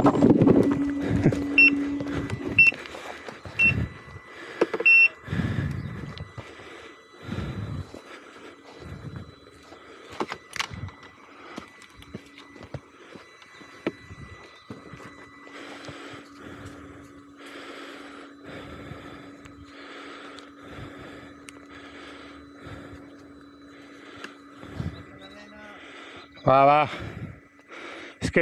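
Electric unicycle riding over a rocky dirt trail: the hub motor's steady hum runs underneath, with scattered knocks as the tyre hits rocks and roots. A few short beeps sound about a second apart near the start.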